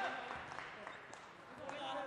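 Faint background noise of an indoor basketball arena, with a man's voice coming in briefly near the end.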